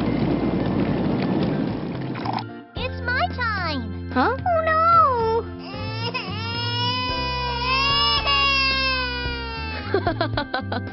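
Cartoon sound over children's background music: a steady rushing noise for the first two seconds or so, then high-pitched wordless character voices whose pitch slides up and down in wailing, crying cries.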